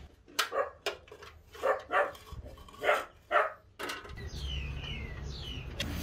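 A dog barking, a run of about eight short barks in the first four seconds, followed by a steady low hum.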